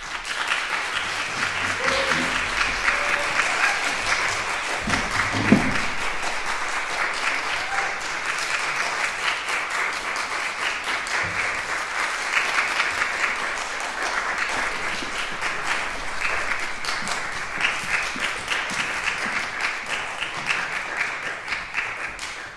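Audience applauding, starting suddenly and going on steadily, with a few voices calling out in the first few seconds.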